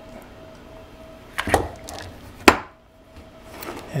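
Two knocks about a second apart, the second sharper, as the opened case of an old electrocautery unit is handled and turned over on a tabletop, over a faint steady tone.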